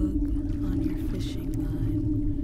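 Ambient drone soundtrack: a steady low hum over a deep rumble, with a few short low notes coming and going.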